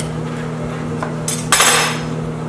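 A table knife working around the rim of a ceramic ramekin, then a short clatter about one and a half seconds in as the knife is set down on the granite counter and the ramekin is picked up and turned over, all over a steady low hum.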